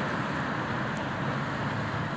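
Semi-trailer truck's diesel engine running as it moves off down the street, heard as a steady low hum mixed with road traffic noise.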